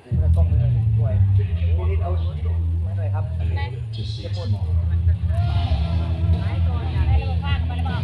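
An engine running close by: a loud, steady low hum that cuts in suddenly at the start, with people talking and coughing over it.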